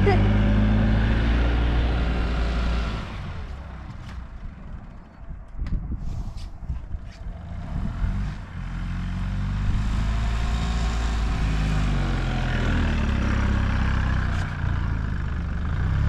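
Gas golf cart engine running hard as the cart drives through snow. It runs loud for about three seconds, drops away, then climbs in pitch from about nine seconds in and holds steady.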